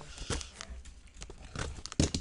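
Cardboard trading-card case being handled close to the microphone: irregular rustling and crinkling with small clicks and knocks, the sharpest just at the end.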